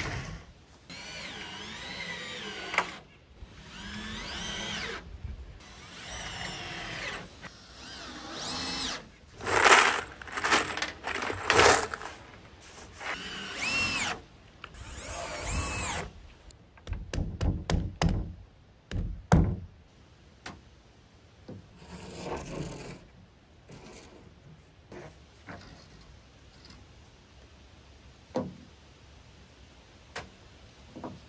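Cordless drill driving screws into plywood decking, its motor whine rising and falling over a series of short runs through the first half. In the second half it gives way to scattered clicks and knocks.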